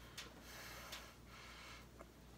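Near silence: faint room tone with a couple of light ticks and a soft hiss.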